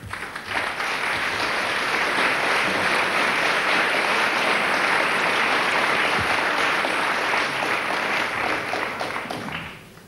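Audience applauding: many hands clapping together, swelling over the first second, holding steady, then dying away near the end.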